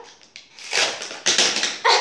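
Plastic packaging of a set of brush pens being torn open by hand, in three short, loud, rustling rips; the last comes near the end, as the pack gives way suddenly.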